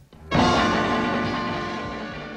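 Closing chord of a blues-sampled hip-hop instrumental: after a brief gap, one sustained chord sounds about a third of a second in and rings out, slowly fading.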